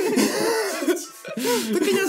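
Two men laughing in short, hoarse, coughing bursts, with music playing.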